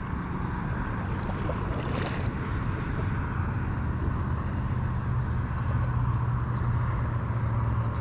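Steady low drone of a distant engine, growing a little stronger a few seconds in, over a constant outdoor noise bed.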